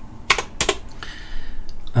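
Computer keyboard keystrokes: a few separate key clicks, two clearer ones in the first second and fainter ones near the end.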